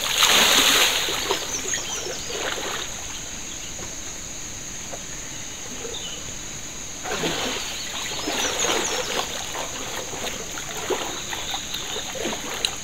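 Bucketful of river water poured over a person's head, splashing loudly for about a second. Quieter sloshing of water follows, then another spell of splashing and sloshing about seven seconds in, as the bather works in the shallow water.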